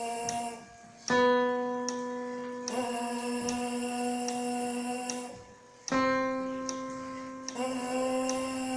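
Trombone mouthpiece buzzed on long held notes, matching a piano that sounds a note about a second in and again near six seconds, over a faint click about every 0.8 s. The sound breaks off briefly twice, just before each piano note.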